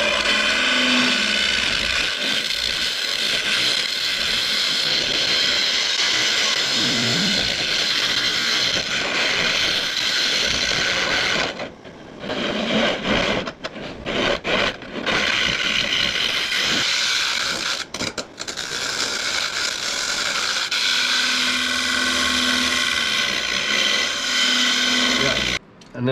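Carbide turning tool scraping the inside of a spinning palm-wood blank on a lathe, a loud steady scraping as the palm wood comes away as dust rather than shavings. It breaks off briefly a few times in the middle as the tool is lifted from the wood.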